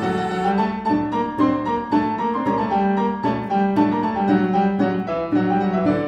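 Classical cello-and-piano duo playing a Spanish dance. The piano carries the passage in a quick run of short, detached notes, about four a second.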